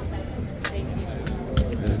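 Casino chips clicking against each other as stacks are picked up and handled, a handful of separate sharp clicks. A word of speech comes at the very end.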